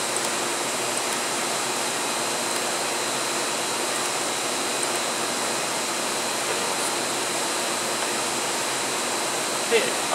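Steady rushing noise of fans or air handling, with a faint steady high whine over it.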